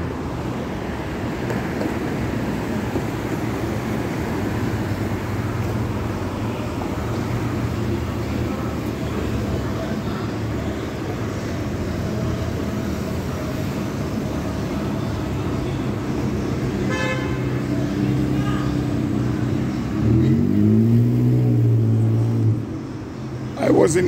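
Street traffic noise: a steady rumble of vehicle engines, with one engine's note rising more loudly about twenty seconds in.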